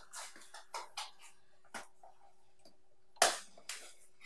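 Small cardboard box being handled and opened by hand: scattered light clicks and scrapes of card, with two louder scuffs near the end.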